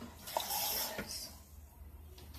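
A short rush of water, under a second long, between two light clicks, as houseplants are watered.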